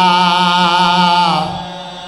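A man's voice chanting one long, held note with a slight waver in the style of a majlis recitation; the note trails off and ends about one and a half seconds in.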